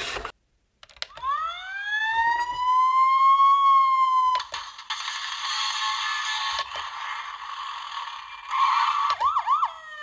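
Electronic siren sound effect from the Paw Patrol Marshall Transforming City Fire Truck toy's small speaker. It winds up about a second in and holds a steady pitch, gives way to a busier stretch of sound effects, and ends with a quick warbling siren and a falling tone.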